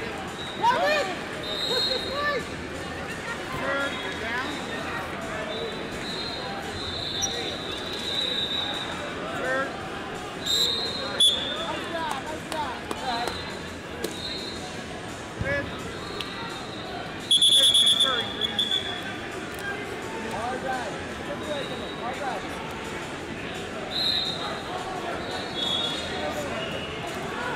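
Busy wrestling tournament hall: voices and shouting from the crowd and coaches, with short high whistle blasts from referees on the mats recurring every few seconds. The loudest and longest blast comes about 17 seconds in.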